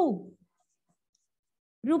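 A woman's voice trails off with falling pitch in the first half second, then there is silence for over a second before her speech starts again near the end.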